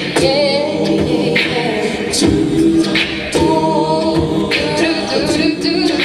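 Co-ed a cappella group singing a pop arrangement into handheld microphones, male and female voices holding sustained chords, with short sharp hiss-like accents over them.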